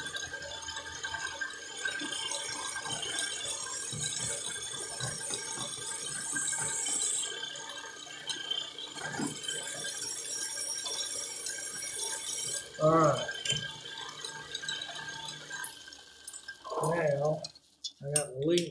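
Metal lathe running with a parting tool cutting into the back of a steel bolt head, used to square the face: a steady motor hum under a high cutting whine with scraping and rattling chips. The whine breaks off about seven seconds in, comes back, and stops about two-thirds of the way through; the lathe then runs down and stops near the end.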